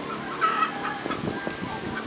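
A few short animal calls over low background noise.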